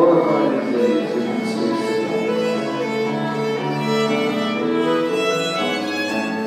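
Live dance band of clarinet, violin and piano playing a waltz tune, with sustained melody notes over steady accompaniment.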